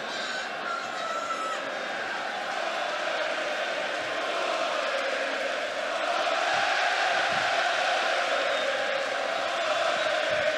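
Large arena crowd cheering and chanting steadily, the sound swelling louder about six seconds in.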